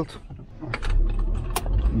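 Car seat belt being pulled across and buckled: a run of light clicks, then one sharp latch click about a second and a half in, with a low rumble underneath from about a second in.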